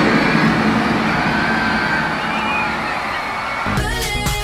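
A loud rushing noise that slowly fades away, with a few faint high whistling glides in it. Music starts just before the end.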